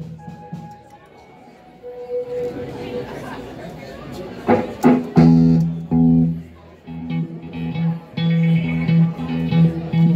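Amplified electric guitar playing a song's opening in a live room: a few quiet picked notes at first, then louder chords from about halfway in, with short breaks between phrases.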